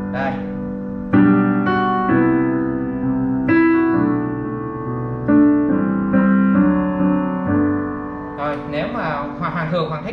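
Roland HP205 digital piano in its plain piano voice, with no layered sound: a slow run of sustained chords, about nine struck one after another, each ringing and fading. A man's voice comes in over the dying piano near the end.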